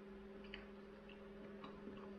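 Faint chewing of pizza toast: soft mouth clicks about twice a second over a steady electrical hum.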